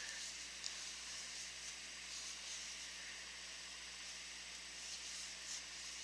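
Quiet steady hiss of room tone, with two faint soft ticks, one shortly after the start and one near the end.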